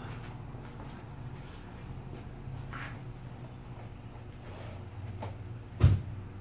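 Steady low background hum with a few faint small clicks, and one short, sharp thump just before the end.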